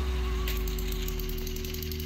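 Small electric motors and plastic gears of toy trains running steadily on plastic track, a low hum with a fast, even ticking.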